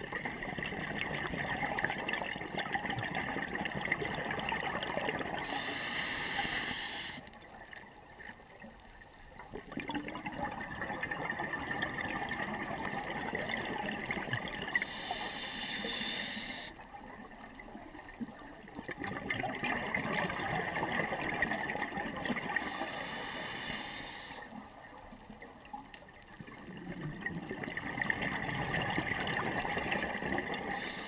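Scuba diver breathing through a regulator underwater: long bubbling exhalations of about five seconds alternate with shorter hissing inhalations, a full breath roughly every eight seconds.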